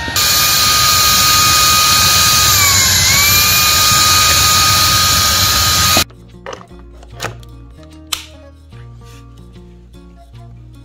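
Shark vacuum cleaner running with its crevice tool at the skirting board, a steady rush of suction under a motor whine that dips in pitch about halfway through and recovers. It stops abruptly about six seconds in, and soft background music follows.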